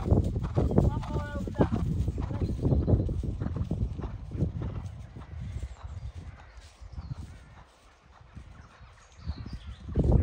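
Horse cantering on grass, its hoofbeats thudding in a quick rhythm, growing fainter in the second half as it moves away across the field.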